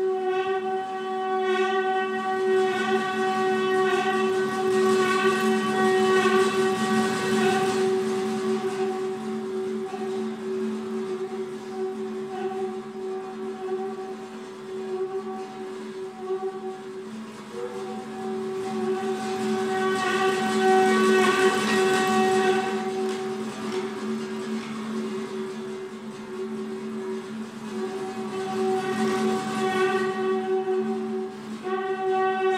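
Saxophone neck blown through a long flexible tube, together with a prepared guitar, holding a drone of several steady pitches that swells louder twice. The sustained tones sound like a whistle or horn.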